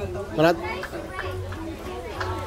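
Children's voices and chatter, with one child calling out in a high, rising voice about half a second in.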